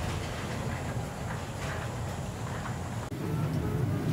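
Steady low rumble of airport terminal ambience with faint scattered voices. About three seconds in it gives way to the slightly louder hum of an airliner cabin during boarding.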